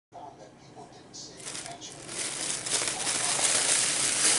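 Thin plastic shopping bag rustling and crinkling as it is handled and pulled off its contents, faint at first and growing louder from about a second and a half in.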